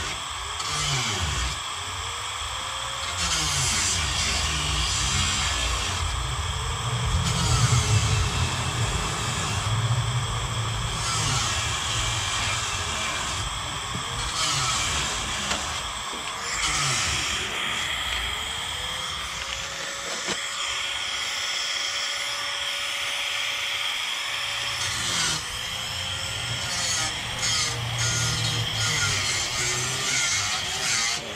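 Power sander running with 320-grit paper on a part being prepped for paint, its pitch rising and falling repeatedly as it works. Music plays in the background.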